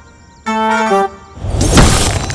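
A short musical sting of a few descending notes, then a rising whoosh that peaks in a loud punch-impact sound effect near the end as a fist smashes into a stone wall.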